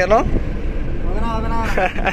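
Steady low road and engine rumble inside a moving car's cabin, with short bursts of talk at the start and again in the second half.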